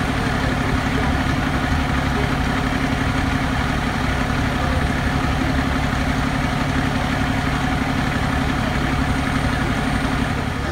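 Ferrara fire ladder truck's diesel engine idling steadily at close range.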